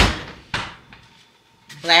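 Refrigerator door pushed shut with a thud, followed about half a second later by a second, sharper knock.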